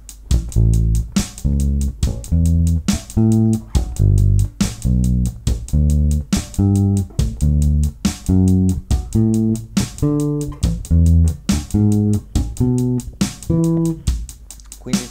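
Fender Precision Bass playing a ghost-note exercise: a short muted, percussive dead note lands on the drum's kick or snare, and a real pitched note follows a sixteenth later, climbing through major-triad arpeggios. A drum backing track with a steady ticking cymbal plays underneath.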